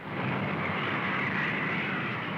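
A steady, even engine-like drone and roar with no separate blasts or shots in it.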